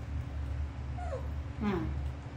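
Young pet macaque giving a short, high, falling whimper-like cry about a second in, over a steady low hum.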